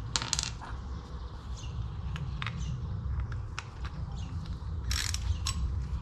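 Small metal hand tools, a socket and ratchet wrench, clinking and tapping against a concrete floor as they are handled. There are scattered sharp clicks, with a cluster just after the start and another about five seconds in, over a steady low rumble.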